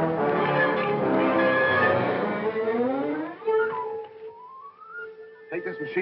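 Orchestral film-score music with full brass and strings. About three seconds in it thins to a lone held note and one slowly rising tone, and it falls away as speech begins near the end.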